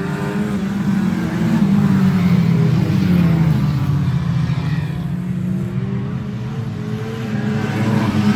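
Several Lightning Rods saloon race cars running hard around an oval track together. Their overlapping engine notes rise and fall as the cars accelerate and pass.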